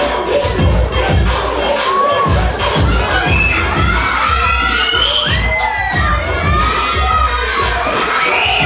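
Audience with many children cheering and shouting over a hip-hop dance track, the shouts rising and falling over its steady bass beat.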